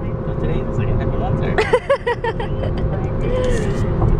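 Steady road and engine rumble inside the cabin of a car driving at freeway speed, with a person laughing in short bursts about one and a half seconds in.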